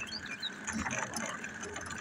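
Faint, irregular ratcheting clicks from a walk-behind push lawnmower's wheels as it is pushed along the road with its engine off.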